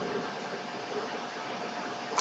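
Steady background hiss with a faint constant tone running through it: the recording's noise floor, with no clicks or other events.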